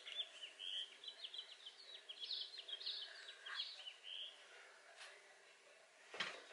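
Small birds chirping faintly in a quick run of high chirps, thinning out about four seconds in.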